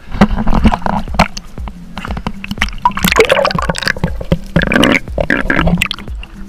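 Seawater sloshing and splashing against a waterproof action camera held at the surface, in irregular gurgling bursts with small knocks.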